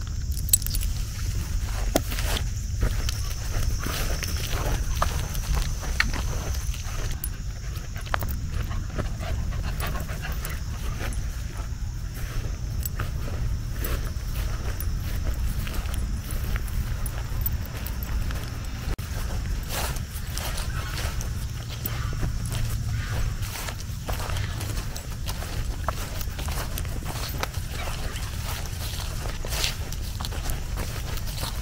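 Dogs and a person moving through grass: scattered footfalls, rustling and small clicks over a steady low rumble, with no barking.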